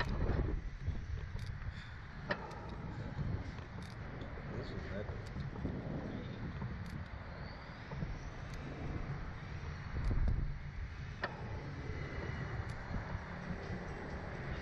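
Wind rumbling on the microphone of a camera mounted on an open slingshot ride capsule as it bobs on its cables, with a stronger gust about ten seconds in and scattered small clicks.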